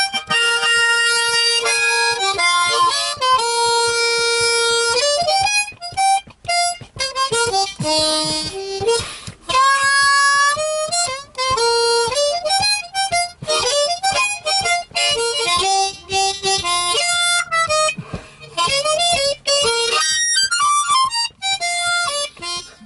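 Unaccompanied blues harmonica solo, played with the harp cupped in both hands: long held notes, bent notes and quick runs, going up to a high riff.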